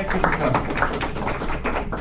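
Brief scattered clapping from a small group, a quick irregular patter of hand claps.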